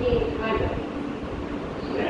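Recorded voice announcement over the PA of an R160 subway train, over the steady low hum of the train standing at the station.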